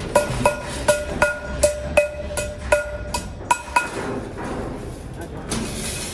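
Iron wire cage panels being struck with a metal tool: a quick run of about ten sharp, ringing metal taps over the first four seconds, then they stop.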